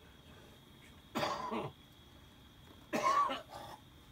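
A man coughing twice, the two coughs about two seconds apart, the second one longer.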